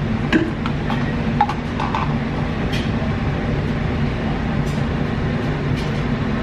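Steady low hum of a running kitchen appliance, with scattered light clicks and taps as a plastic tumbler and syrup bottle are handled.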